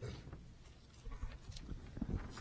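Faint, irregular footsteps and small knocks as a person walks up to a podium.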